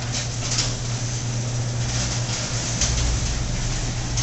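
Electric garage door opener running as the sectional garage door rises: a steady mechanical drone with a few faint clicks.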